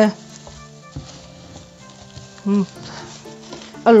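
A spatula stirring and scraping thick soap batter at medium trace in a plastic tub: faint, soft wet scraping, with a small tick about a second in.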